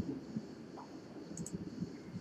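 A few faint computer mouse clicks, two close together about one and a half seconds in.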